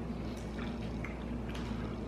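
Faint wet chewing and mouth clicks of someone eating a chewy caramel-and-pecan chocolate candy, a few small clicks scattered through, over a steady low hum.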